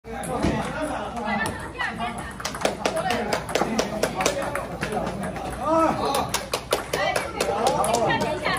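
Table tennis rally: the ball clicks sharply off paddles and table, several times a second. Voices chatter in the hall underneath, with one louder voice about six seconds in.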